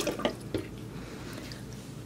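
A couple of last drips of water falling into a partly filled stainless-steel electric kettle as the pour ends.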